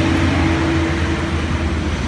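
A motor vehicle engine running steadily: a low rumble with a steady hum that fades about half a second in.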